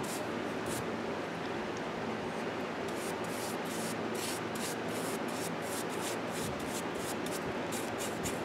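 Bristle brush scrubbing polyurethane varnish into a carved wooden figure: a dry, scratchy rubbing in quick repeated strokes, over a steady low hum.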